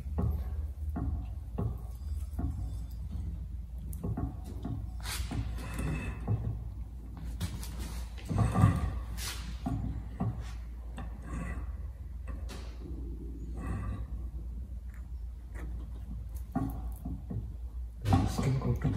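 Rustling of juniper foliage and small clicks and knocks as the bonsai's branches are bent and positioned by hand, over a steady low hum. The loudest burst of handling noise comes about halfway through.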